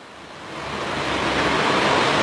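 A rushing, surf-like noise with no pitch, swelling steadily louder.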